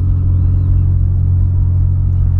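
2008 Volkswagen Polo sedan heard from inside the cabin while driving: a loud, steady low drone from the engine and exhaust, holding even revs.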